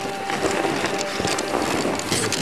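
A dog sled pulled by Alaskan Malamutes moving through snow: a steady rushing noise of runners and paws in the snow with a few scattered crunches, and wind buffeting the microphone.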